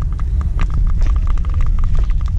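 Bicycle ride on a paved path heard through a handlebar-mounted camera: a heavy, constant low rumble of wind and tyre on the mic, with many quick light ticks and rattles from the bike, thicker in the second half.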